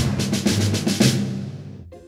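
Short intro music sting with drum hits over a held low tone, fading away near the end.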